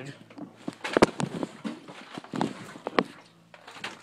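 Knocks and clunks as an old Suzuki DR125 dirt bike with stiff, seized wheels is shoved and dragged. The sharpest knock comes about a second in and another near three seconds.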